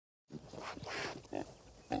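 Faint animal-like sounds: a few short, irregular noises in the first second and a half and a brief one just before the end.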